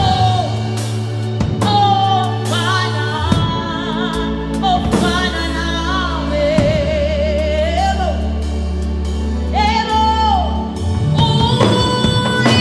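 A woman singing a gospel worship song into a microphone, in long held phrases with vibrato, over instrumental accompaniment of sustained low chords that change every few seconds.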